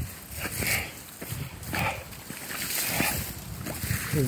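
Wind buffeting the phone's microphone, with soft rustling swells about once a second from footsteps through dry grass.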